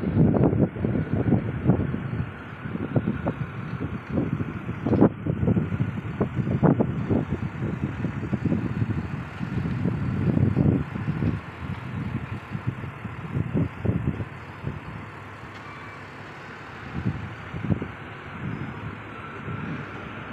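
Heavy trucks running in a loading yard, mixed with wind buffeting the microphone in irregular gusts. It gets quieter after about halfway.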